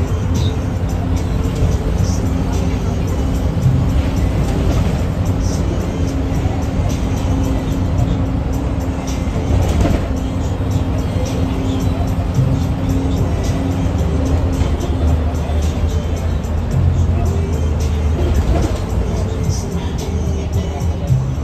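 Cabin noise inside a moving city bus: a steady low engine and road rumble, with music playing over it.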